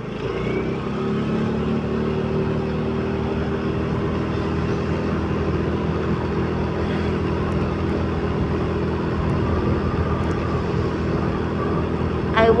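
Motorbike engine running while riding, its pitch rising briefly at the start as it picks up speed and then holding steady, with wind and road rush.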